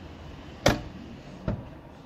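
A Peterbilt 579 cab door being shut: one sharp slam as the latch catches, under a second in, followed by a softer thump about a second later.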